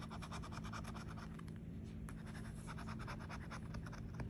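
Scratch-off lottery ticket (Gold Rush Limited) having its coating scraped off with a scratching tool in quick, even strokes, several a second.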